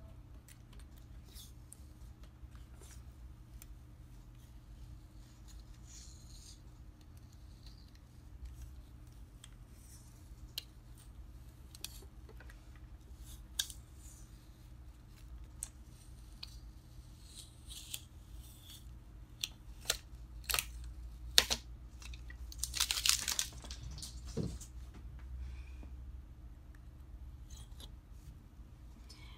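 Adhesive vinyl stencil being peeled by hand off wooden slats: soft intermittent tearing and crinkling with small clicks, louder for a few seconds about three-quarters of the way through. A faint steady low hum lies underneath.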